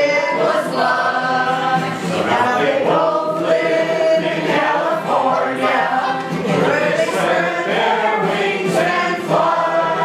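A group of people singing a song together from lyric sheets, continuous throughout.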